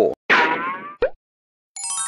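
Cartoon-style 'boing' sound effect whose tone slides downward for under a second, followed by a short click. Near the end a bright jingle of struck bell-like notes begins, one note after another.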